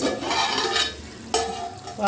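Chicken curry sizzling and bubbling in an aluminium pot as its metal lid is lifted off, with a sharp clink and brief ringing from the lid about one and a half seconds in.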